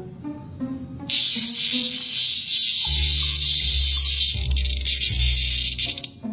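A cicada buzzing: a loud, steady, high-pitched drone that starts about a second in, over background music with a low bass.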